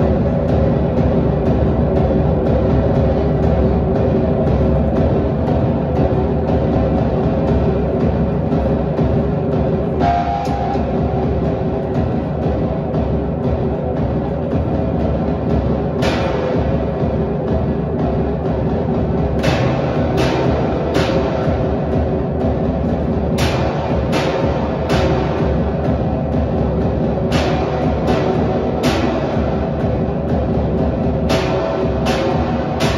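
Live improvised experimental music: a dense, sustained drone with a heavy low end. About halfway through, sharp struck hits join it, coming roughly every second or so toward the end.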